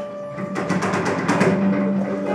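Live ensemble improvisation: held low tones sound under a quick flurry of rattling, clicking percussion that starts about half a second in and fades near the end.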